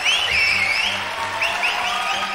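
Live audience applauding and cheering, with short high whistle-like chirps, over instrumental music.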